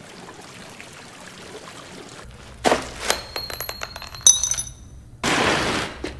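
A small metal engagement ring clinking as it falls through a drainpipe: several sharp clicks with bright ringing chimes about three to four seconds in. A short rush of noise follows near the end.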